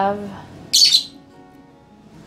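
A single short, harsh, high-pitched bird squawk, about three-quarters of a second in.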